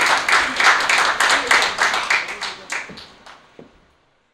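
A small audience clapping, the applause thinning out to a few scattered claps and dying away just before the end.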